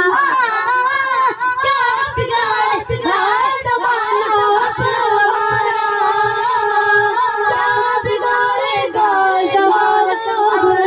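A boy reciting a naat, singing solo into a microphone in an ornamented, melodic line that settles into longer held notes about halfway through.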